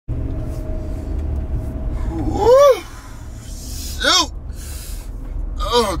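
Low, steady rumble of a vehicle cabin, with a faint steady tone in the first two seconds. Over it a tired man gives two short voiced sighs, each rising then falling in pitch, about two and a half and four seconds in. He starts speaking just before the end.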